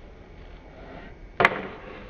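A single sharp knock about one and a half seconds in, over low steady background noise.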